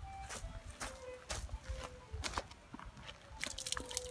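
Faint water trickling from an outdoor stone drinking fountain, with light irregular clicks of footsteps on a dirt path; the clicks come faster near the end.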